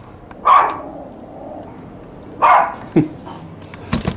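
A dog giving two short barks about two seconds apart.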